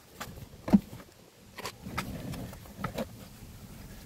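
Molded rubber all-weather floor mat being handled and laid into a pickup's rear footwell: a few light knocks and rubs, with one sharper thump about three-quarters of a second in.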